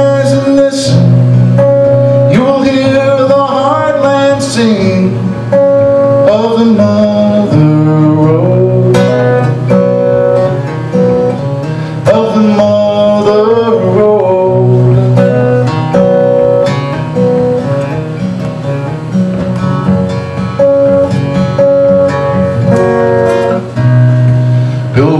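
Acoustic guitar playing a country-style song, with a man's singing voice coming in at times.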